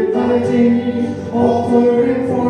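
Voices singing a hymn with acoustic guitar accompaniment, in held notes that change pitch every half second or so.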